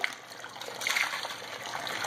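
Water splashing and running across the deck of a gold shaker table, flushing trapped concentrate down into the catch tray, a little louder about a second in.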